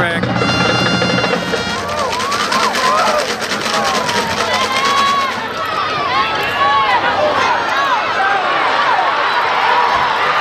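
Stadium crowd at a high school football game shouting and cheering over the home band, which plays a held chord and fast drumming in the first seconds as the ball is kicked off.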